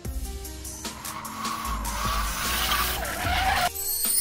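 Edited-in sound effect of car tyres squealing in a skid, starting about a second in and cutting off abruptly near the end, over background music.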